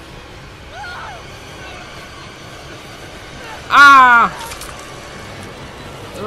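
A single loud shouted cry, falling in pitch and lasting about half a second, about four seconds in. It sits over a quiet background, with a faint brief voice about a second in.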